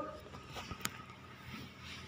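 Quiet room noise with one or two faint, sharp clicks a little under a second in.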